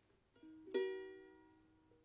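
Ukulele strummed: a light chord about a third of a second in, then a firmer strum just before a second in that rings on and fades away.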